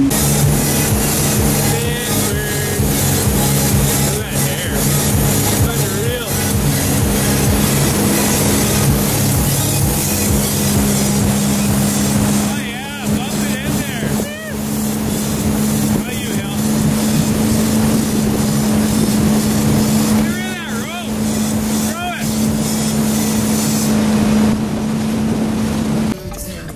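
A Tigé wake boat's engine runs with a steady low drone under the rush of wind and the churning wake water.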